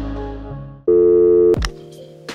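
Background music fades out, then a single loud, buzzy electronic tone like a telephone busy signal sounds for under a second and cuts off abruptly.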